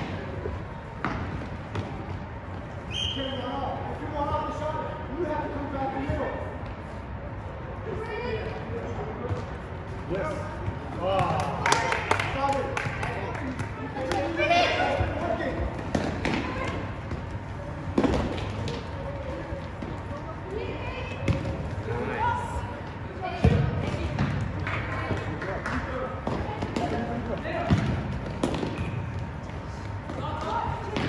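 A futsal ball being kicked and bouncing on a gymnasium floor, a series of sharp thuds, the loudest about 18 and 23 seconds in, over steady indistinct shouting from players and spectators.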